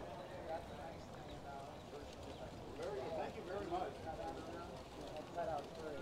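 Background voices of nearby people talking, softer than the narrator, heard mostly from about three seconds in, over steady outdoor background noise.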